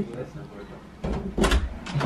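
An interior door being opened: a sharp latch click about halfway through as the door swings open, with a low rumble of bodies moving through the doorway.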